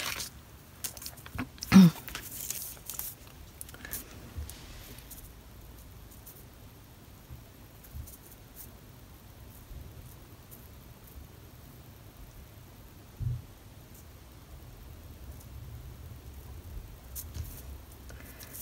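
Hands handling craft materials on a tabletop: a knock about two seconds in, a moment of rustling, then quiet work over faint room tone, with a soft thud near the middle and a few small clicks.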